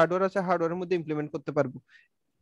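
A man speaking continuously in lecture style, his voice stopping shortly before the end. Speech only.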